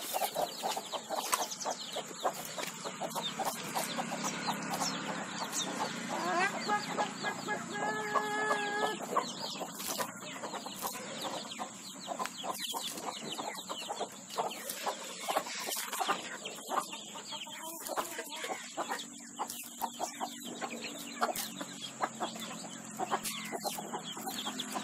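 Free-range hens clucking, with chicks peeping, in a continuous busy chatter. One longer held call stands out from about seven to nine seconds in.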